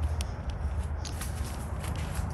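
Footsteps on gravel, a few faint irregular crunches, over a steady low rumble.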